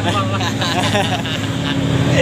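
Truck engine running steadily under way, heard from inside the cab as a low drone, with a man's voice talking over it in the first second or so.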